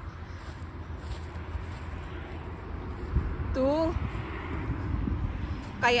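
Wind rumbling on a phone microphone outdoors, a low steady buffeting. A short high voice calls out once, a little past halfway.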